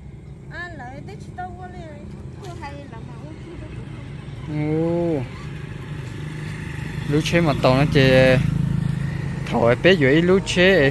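A car approaching along the road, its engine and tyre noise growing louder through the second half, under short bursts of people talking.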